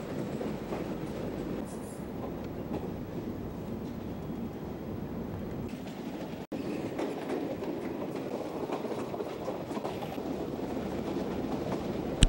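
Diesel passenger train running along the rails, heard from a carriage window: a steady rumble of wheels on track with irregular clatter, on fairly poorly maintained track. The sound cuts out briefly about halfway.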